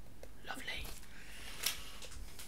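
Faint handling of packaging in a subscription box: soft rustles with one sharp click near the end.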